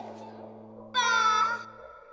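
A high, squeaky cartoon voice-like squeal, held for under a second about halfway through, over a low steady synth drone that fades out near the end.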